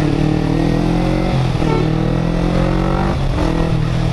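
Kawasaki Ninja 250 parallel-twin engine pulling under way, its pitch climbing gently with two short breaks, about a second and a half and three seconds in, over steady wind rush on the helmet-mounted microphone.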